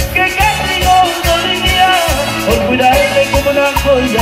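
Live band music in an instrumental passage: a wavering lead melody over a steady bass-and-drum beat.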